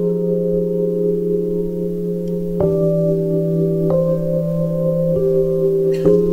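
Instrumental passage of a live band ballad: a keyboard holds soft, bell-like chords over a steady low note, moving to a new chord about every second and a half from midway through.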